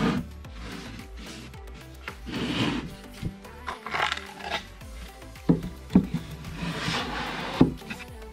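Half-inch birch plywood panels scraping and rubbing against each other as a plywood center divider is worked into a plywood drawer box. Three sharp wooden knocks come in the second half. Background music plays quietly underneath.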